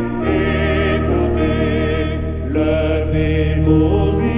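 Choral music: long held sung notes with vibrato over sustained low chords, the chord changing twice.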